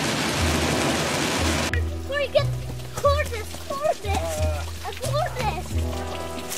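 Heavy rain hissing on a car's windshield and roof, which cuts off suddenly a little under two seconds in. Music with a stepping bass line starts under the rain and carries on alone after it stops, with a singing voice over it.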